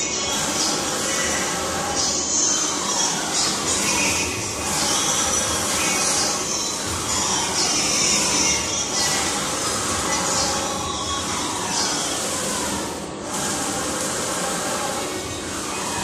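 Wide-format flex banner printer running, its print-head carriage sweeping back and forth over the media with a steady mechanical whir and a sliding whine that repeats every second or two.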